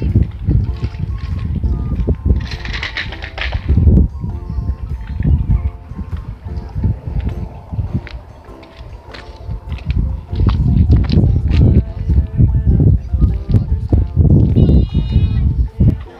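Background music with steady held notes, over a loud low rumble that comes and goes.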